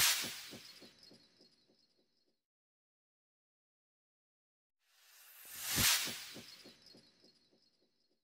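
Two swelling whoosh transition sound effects with a glittery shimmer on top. The first peaks right at the start and the second about six seconds in, and each dies away over about two seconds in a run of fading echoes, with silence between them.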